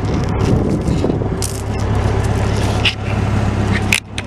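An engine running steadily, with wind and handling rustle on the handheld microphone and a couple of brief rattles.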